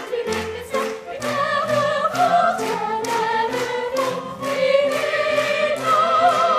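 Youth opera chorus singing held notes with vibrato over an accompaniment with a steady beat, about two beats a second.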